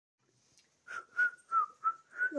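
A person whistling a run of short notes at nearly the same pitch, about three a second, starting about a second in.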